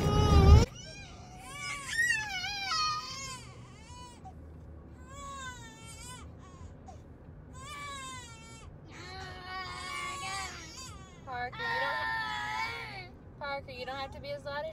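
A baby crying in repeated short, wavering bouts inside a car, after a brief loud noise right at the start.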